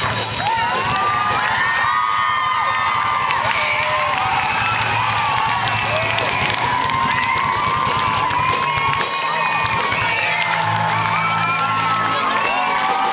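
A hall full of children cheering and screaming, with amplified rock band music beneath.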